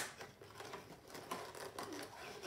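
Clear plastic blister packaging being handled and pried at, giving irregular light clicks and crinkles.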